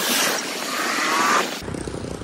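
Street traffic: a tractor and motorcycles running past, with an engine note rising about a second in. Near the end the sound cuts abruptly to quieter outdoor noise.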